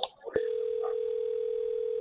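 Telephone ringback tone heard over the phone line: one steady ring of just under two seconds as the call is put through to an extension after pressing 4 in the phone menu.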